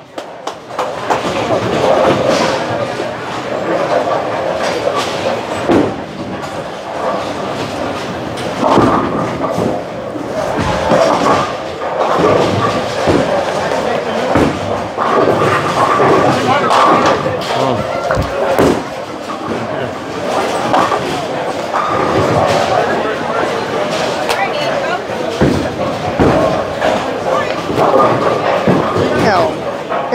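Busy bowling-alley din: bowling balls thudding onto the lanes and crashing into pins on nearby lanes, heard as repeated knocks and crashes over a steady murmur of voices in a large hall.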